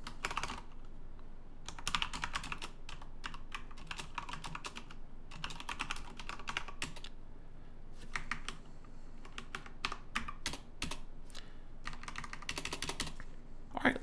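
Computer keyboard being typed on: quick runs of keystrokes in bursts, with short pauses of about a second between them.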